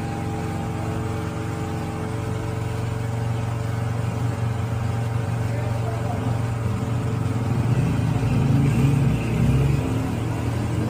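A steady low machine hum with several fixed tones, getting louder and busier a few seconds before the end.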